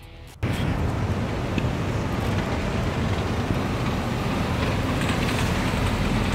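A 2020 MG 6 fastback sedan driving, its 1.5-litre turbocharged engine and tyres making a steady running noise that cuts in suddenly about half a second in.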